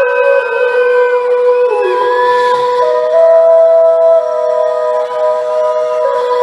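Live pop concert sound heard from the crowd: a steady held keyboard note with long sung notes held above it that step up in pitch about three seconds in and back down about a second later, and shrill fan screams scattered over the top.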